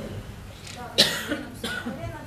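A person coughing: one loud, sudden cough about a second in, followed by brief voice sounds.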